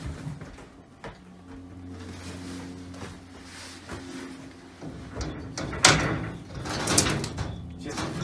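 Metal-framed wire-mesh enclosure knocking and rattling as a lioness tugs at a toy held through the mesh: one sharp knock about six seconds in, then a cluster of knocks around seven seconds. A low steady hum runs underneath in the first half.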